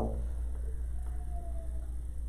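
Chalk drawing a curve on a blackboard, with a brief faint squeal slightly falling in pitch around the middle, over a steady low room hum.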